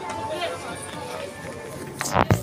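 Indistinct voices of shoppers in a busy clothing shop, with music playing in the background.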